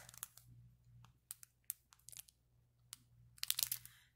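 Plastic-and-card bookmark packaging crinkling as it is handled, in faint scattered crackles with a denser run of them near the end.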